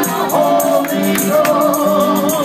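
Congregation singing a gospel song, a woman's voice leading on a microphone over the group. Shaken hand percussion keeps a steady beat of about three strikes a second.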